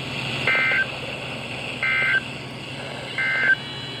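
Three short bursts of NOAA Weather Radio SAME digital code, the end-of-message signal that closes a required weekly test. Each is a brief, harsh two-tone data chirp, repeated about every 1.4 seconds and heard through a weather radio's speaker.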